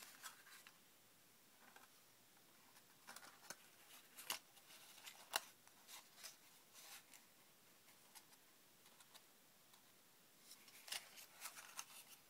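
Faint, scattered clicks and rustles of folded cardstock pieces and a rubber band being handled and threaded, with a few sharper ticks in the middle and a quick cluster near the end.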